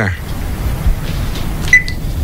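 A single short high electronic beep from a cordless phone handset as the call is ended, over a low steady rumble.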